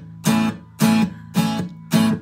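Acoustic guitar strummed in a steady rhythm, four strums about half a second apart, each fading before the next.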